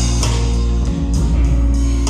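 Live band playing with electric guitar chords held over keyboard and bass.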